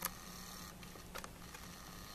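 Faint click and a short mechanical whirr, typical of a video camera's autofocus motor, with another click a little past a second in, over a steady low hum.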